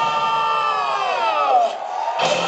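Live symphonic metal band: a held chord slides steadily down in pitch as the drums and bass drop out, over a cheering crowd in the arena.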